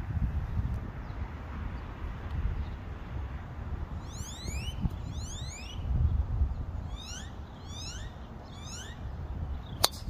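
A golf club strikes the ball in a tee shot, one sharp crack near the end. Before it, a bird calls in two runs of quick rising whistled notes, over a low rumble.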